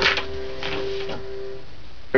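Digital piano with a single held note slowly dying away in a pause between phrases, with a few soft clicks over it.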